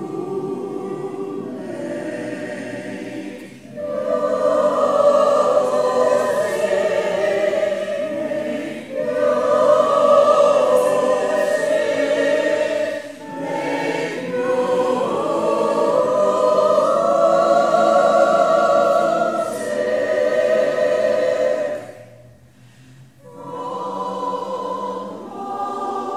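Choir singing in long held phrases, with short breaks between them and a longer pause near the end before a new phrase begins.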